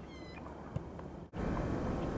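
Outdoor wind and field noise with a short bird call falling in pitch at the start and a single sharp knock a little later. About a second and a quarter in the sound drops out for an instant and returns louder.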